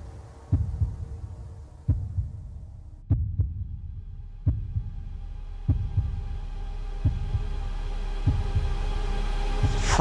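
Suspense sound effect: low heartbeat-like thumps about every second and a quarter, one of them a double beat, over a droning tone that comes in about three seconds in and slowly swells.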